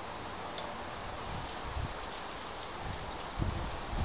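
Quiet outdoor background hiss with a few faint ticks and soft low bumps, the sound of a tin can being lightly handled.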